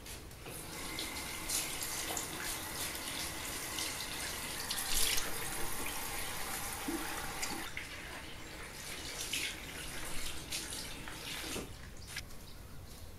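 A bathroom tap runs water into a ceramic washbasin while rubber-gloved hands scrub and wipe the bowl. The running water is steady, eases off after about eight seconds and stops shortly before the end.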